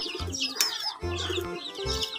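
A flock of chicks peeping constantly, many short high chirps overlapping, over background music with low held notes.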